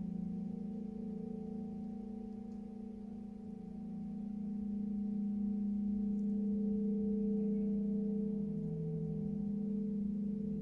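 A 36-inch Cosmo gong sounding softly as a sustained low hum of several tones. It dips a few seconds in, then swells louder.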